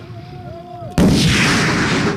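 An explosive detonation goes off about a second in: a sudden sharp blast followed by a loud, drawn-out rumble.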